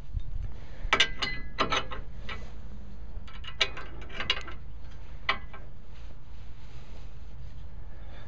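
Steel receiver hitch pin and its spring clip being fitted through the hitch receiver: a cluster of sharp metal clicks and clinks with brief ringing, then a few scattered clicks later, over a steady low rumble.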